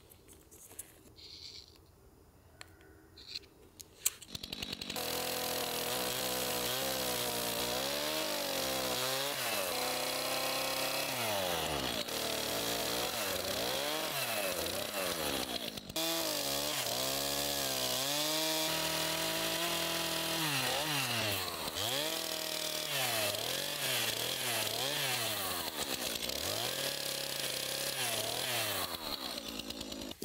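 Stihl chainsaw cutting a notch into a round wooden post, starting about four seconds in. Its engine speed rises and falls again and again as it bites into the wood.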